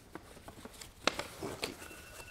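Paper envelope and paper cards being handled: faint rustling with a few light ticks, the sharpest about a second in.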